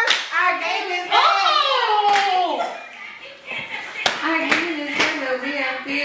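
Women chanting a cheerleading cheer with long drawn-out shouted words, punctuated by a few sharp hand claps.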